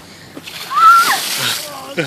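A bucketful of ice water poured over a person, splashing down onto her and the ground, starting about half a second in. A short high-pitched cry rises and falls at the loudest moment.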